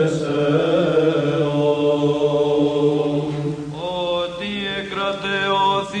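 Greek Byzantine chant: a voice draws out a long melismatic line over a steady low held note, and the melody glides upward about two thirds of the way through.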